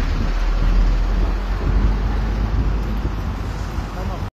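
Steady outdoor rumble of wind on a phone microphone mixed with road traffic noise, with no voices.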